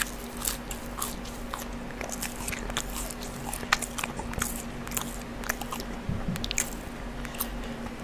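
Close-miked chewing of crinkle-cut French fries: many irregular small clicks and crunches of the mouth.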